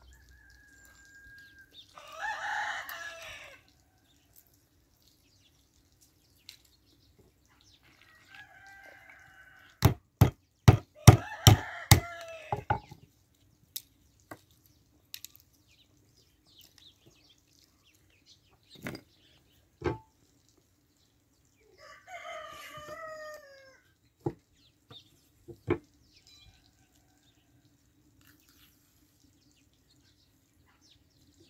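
A rooster crowing four times, each crow lasting about a second and a half. Around the middle comes a quick run of about seven sharp knocks, the loudest sounds here, as walnuts are cracked on a wooden board, with a few single knocks later.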